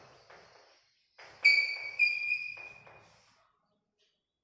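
Chalk scratching across a blackboard in short writing strokes, with two sudden high-pitched chalk squeaks about a second and a half and two seconds in that ring and fade over about a second.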